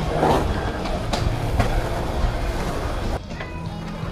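Background music over a low outdoor rumble with a few short knocks; the sound changes abruptly about three seconds in.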